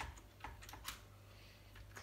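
A few faint, quick keystrokes on a PS/2 computer keyboard, mostly in the first second.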